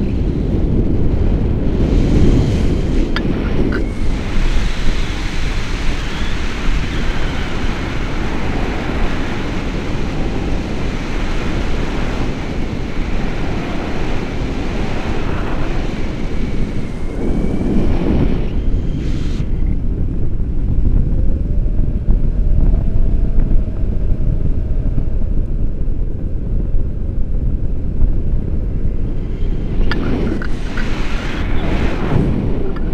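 Wind rushing over an action camera's microphone in flight under a tandem paraglider: a loud, steady buffeting, swelling stronger about two seconds in and again a little past the middle.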